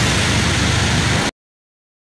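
A dragon roar sound effect: a loud, rough, steady roar that cuts off abruptly just over a second in.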